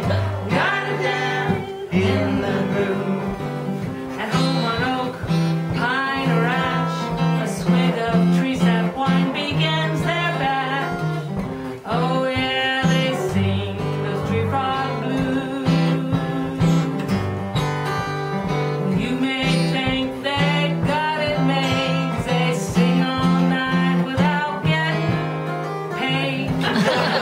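A woman singing a blues song to a fingerpicked acoustic guitar, the guitar keeping a steady run of low bass notes under the vocal line.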